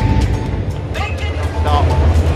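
Background music and voices over a steady low rumble from a Type 10 tank's engine as it drives across the range.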